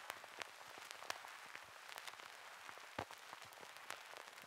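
Faint, scattered crackling clicks over a low hiss, with one slightly louder click about three seconds in; no music.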